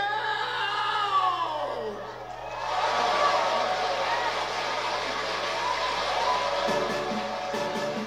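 A Korean trot song ends on a long downward pitch slide, then a studio audience applauds and cheers for several seconds. About a second before the end, the band starts up the next song.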